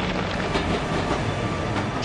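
Steady rumble and clatter of a column of soldiers on the march: tramping boots and rattling equipment.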